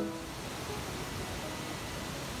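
A waterfall's steady rush of falling water. The last plucked-string note of the background music dies away right at the start.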